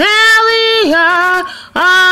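A woman singing solo and unaccompanied, holding long notes that step down in pitch, with a brief breath pause shortly before a new note begins near the end.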